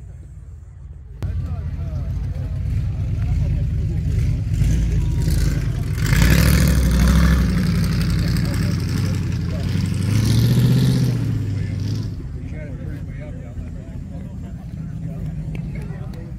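Hot-rod car engine running through an open, upright exhaust pipe. It comes in loud about a second in, is revved up and down in the middle, then settles back to a lower idle.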